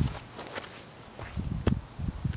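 Irregular low thumps and scuffing close to the microphone: a sharp one at the start, then a quick cluster about a second and a half in.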